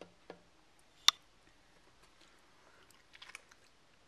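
Quiet mouth sounds of someone tasting hummus off a finger, with one sharp click about a second in and a few soft smacking clicks near the end.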